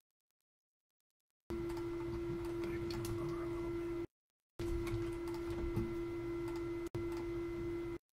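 A steady, single-pitched hum over faint room noise. It starts about a second and a half in, breaks off abruptly into dead silence just after four seconds, and drops out again for an instant near the end.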